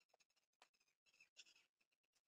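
Very faint snips of hair-cutting scissors closing on a lock of long hair, a few short snips over the two seconds.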